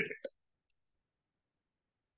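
A man's voice ends a word, then silence.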